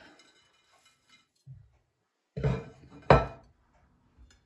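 A ceramic plate set down on a kitchen countertop, with a soft bump and then two knocks; the sharp clack a little after three seconds in is the loudest.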